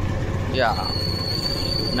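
Motorcycle engine running while riding, with steady wind and road noise over a low drone. Just after half a second a brief falling voice-like sound is heard, and a thin high whine starts and holds steady.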